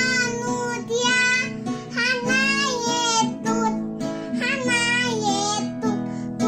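A young girl singing a children's song in Indonesian over instrumental accompaniment, in phrases with short breaths between them.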